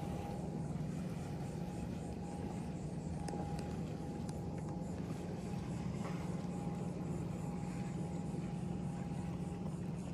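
A steady low motor hum with a thin, steady whine above it, unchanging throughout, and a few faint ticks.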